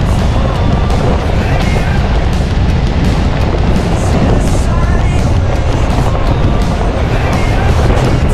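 Heavy wind rumble on the microphone and a vehicle running while on the move, starting abruptly, with rock music playing over it.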